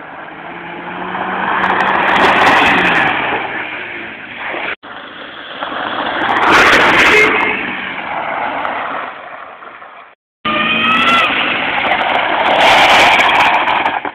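Rally cars passing at speed on a gravel road, one after another in three abrupt cuts. Each engine revs up as the car approaches and fades as it goes by, with tyres throwing gravel. In the last pass the engine is heard climbing in pitch through the gears.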